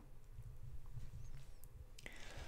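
Faint room tone: a steady low hum with a faint steady tone above it, and a soft click at the start.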